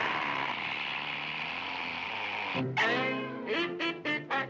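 Cartoon sound effect of fizzing liquid spraying out in a steady hiss for about two and a half seconds, which cuts off suddenly. Jazzy band music then comes back in with short rhythmic notes.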